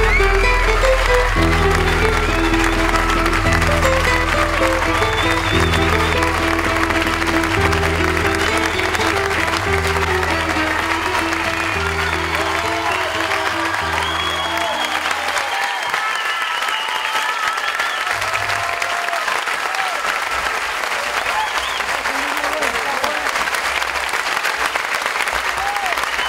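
Audience applauding over closing music that holds slow, low sustained notes with a melody above them. The music stops about fifteen seconds in, and the applause carries on alone.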